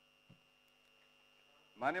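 Steady electrical hum with a faint high whine over very quiet room tone through the chamber's microphone system. A man's voice starts speaking near the end.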